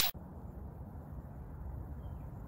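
The tail of a whoosh cuts off at the very start, then a steady low outdoor rumble, the background noise of a phone microphone recording outdoors.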